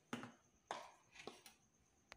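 Near silence: room tone with four faint, short clicks.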